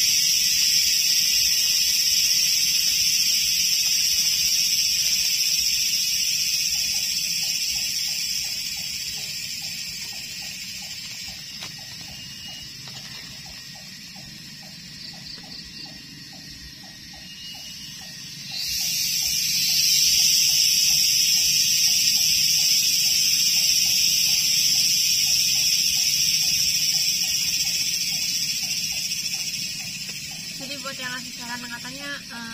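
A loud, steady, high-pitched insect chorus that fades away over several seconds, then cuts back in sharply about two-thirds of the way through. Underneath it, a fainter, lower animal call pulses about three times a second.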